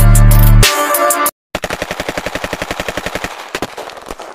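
A deep bass boom with music, which cuts off about a second in; after a short silence, a long burst of automatic gunfire, about ten shots a second, ending in a few scattered single shots near the end.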